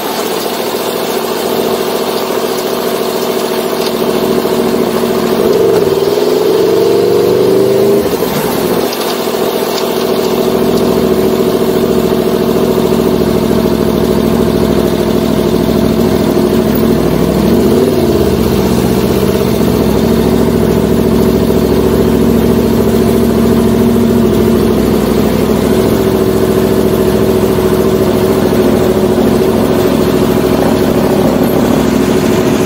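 Aprilia sport motorcycle engine running steadily while riding. Its pitch rises a few seconds in, then dips and climbs again around the middle as the throttle changes.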